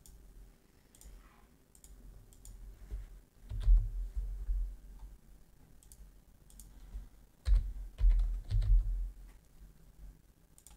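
Computer mouse clicks and keyboard keystrokes at a desk: scattered single clicks, with two louder runs of keystrokes, one about three and a half seconds in and one from about seven and a half to nine seconds.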